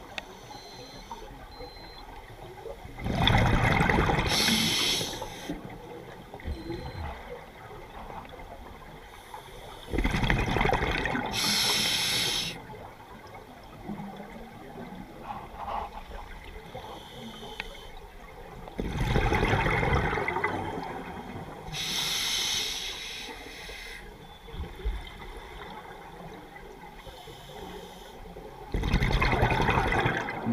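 Scuba diver breathing through a regulator underwater, four slow breaths about eight seconds apart. Each is a gurgling rush of exhaled bubbles lasting about two seconds, then a short hissing inhale.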